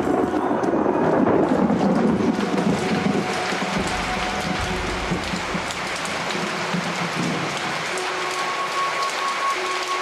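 Rain falling steadily, with a low rumble of thunder in the first half.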